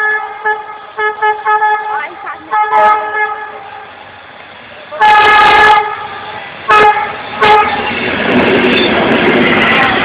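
Train horn sounding a single note in a string of short toots, then a longer blast and two quick toots. The steady noise of the moving train builds up near the end.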